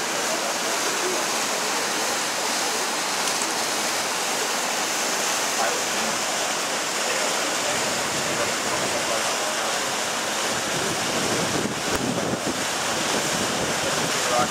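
Horcones River rushing steadily through rapids and small waterfalls between granite boulders. Low wind buffeting on the microphone joins in the second half.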